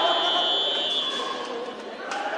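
Electronic end-of-round buzzer sounding one steady high tone for about a second, marking the end of the round, over crowd chatter.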